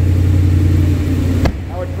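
A 2017 Ram 2500's 6.4-litre Hemi V8 idling with a steady low hum. About one and a half seconds in, a single sharp thump, the truck's door shutting, after which the engine sounds quieter.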